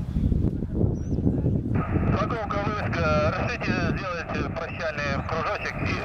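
A voice over a radio speaker, thin and narrow-band, comes in sharply about two seconds in and keeps talking: an air-band radio call. Under it a low, uneven rumble runs throughout.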